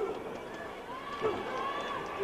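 Indistinct shouting voices from a small wrestling crowd, with no clear words.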